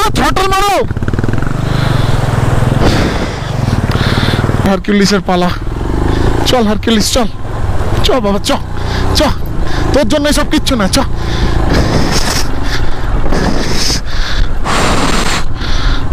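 Motorcycle engine running at low revs while the bike crawls through a rocky stream crossing, over the steady noise of rushing water, with short shouted calls from people nearby.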